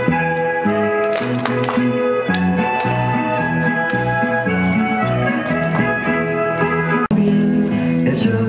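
Norwegian folk dance tune with a steady beat and held melody notes, with short runs of sharp hand claps from the dancers. The sound drops out for an instant about seven seconds in.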